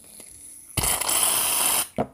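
Aerosol can of shaving cream spraying foam: a loud hiss lasting about a second, starting a little before halfway through and cutting off suddenly.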